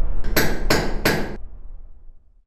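Sound-designed audio logo: a low rumble with three evenly spaced, sharp, hammer-like strikes about a third of a second apart, each ringing briefly before the rumble fades away.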